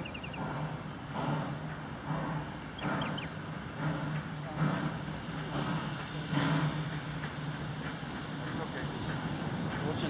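Distant Queensland Railways C17 class steam locomotive working toward the bridge, its exhaust beats coming about once a second over a steady low rumble. A bird chirps briefly a few times.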